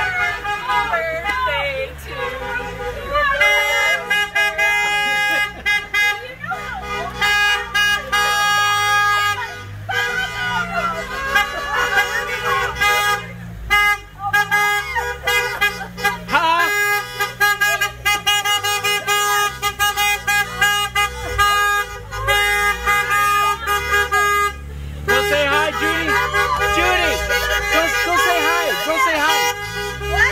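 Car horns honking over and over from a slow line of passing cars, long held blasts and short toots overlapping, mixed with people's voices calling out.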